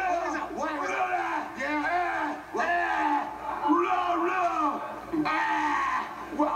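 A man crying out in long, wordless, rising and falling wails.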